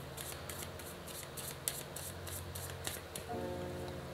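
A deck of cards being shuffled by hand, a string of crisp, irregular card snaps, over soft background music with a steady low drone. A higher chord joins the music about three seconds in.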